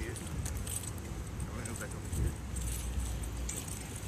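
Light jingling in a few short bursts while the phone is carried outdoors, over a steady low rumble.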